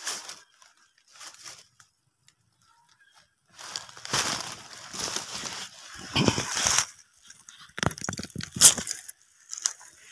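Dry leaf litter and undergrowth rustling and crunching as it is pushed through and handled, in bursts from a few seconds in until near the end, with a few sharper snaps.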